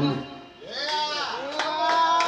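Backing music stops shortly after the start; after a brief lull a singer's voice comes in with several quick wavering rises and falls in pitch, then settles into a held note.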